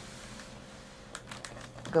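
Pause in the reading: a steady low hiss, with a few faint light clicks a little past a second in from the hardcover picture book being held and shifted by hand.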